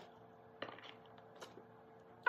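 Near silence: room tone with two faint clicks less than a second apart, from fruit being placed into plastic meal-prep containers by hand.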